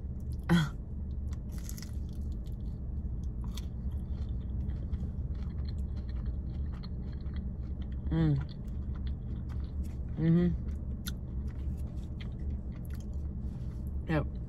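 Close-up chewing and biting of a fried mac and cheese bite, with small scattered clicks and three brief voiced hums, near the start and twice more in the second half. A steady low hum runs underneath.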